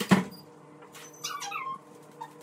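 A front door shutting with a thud right at the start, then a child's high-pitched call, falling in pitch, about a second later.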